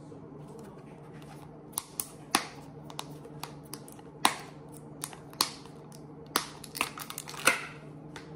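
Plastic clicks and crackles from a cream cheese tub being handled and its snap-on lid pried off. About a dozen sharp snaps come irregularly from about two seconds in, with the loudest near the end.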